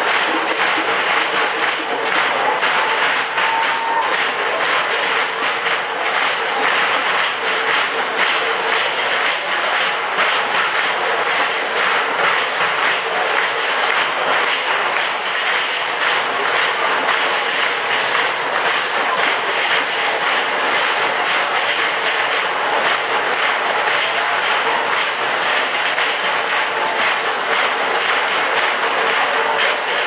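Live band music in a club, heard through a dense, steady clatter of audience clapping that keeps up throughout, with a faint held note underneath.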